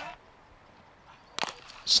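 A single sharp crack of a cricket bat striking the ball, about one and a half seconds in, after a stretch of faint outdoor ground ambience.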